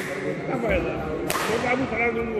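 Badminton racket striking a shuttlecock twice in a rally, sharp cracks about 1.3 s apart, the second the louder and ringing briefly in the hall, over spectators' chatter.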